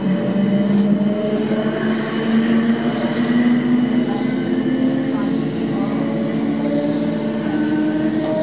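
Class 455 electric multiple unit, refitted with a new AC traction package, moving off from a station, heard from inside the carriage: a whine from the traction equipment that rises in pitch as the train gathers speed, over the rumble of the running gear.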